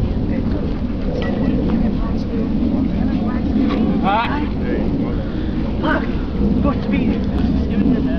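Steady low rumble of wind buffeting a camcorder microphone outdoors, with indistinct voices of people talking nearby, one clearer about four seconds in.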